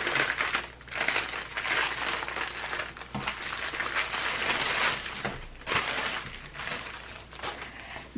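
Clear plastic packaging around a rolled diamond painting canvas crinkling as hands handle it and feel for the opening, in irregular rustles with a few sharper crackles.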